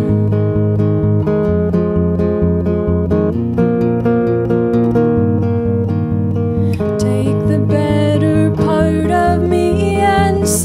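Acoustic guitars strummed steadily in a folk song's instrumental passage, chords ringing in a regular rhythm.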